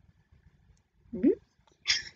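Near quiet, then a short rising "hmm" from a boy about a second in, and the first sound of a word just at the end.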